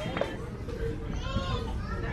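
A young child's high voice speaking over a steady low background hum.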